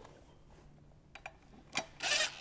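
Faint metal clicks of a socket and bolts on a steel cover as the hardware is started, with one sharper click near the end.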